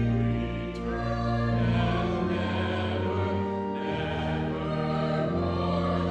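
Two women singing a hymn together, with organ accompaniment holding sustained chords under them that change every second or two.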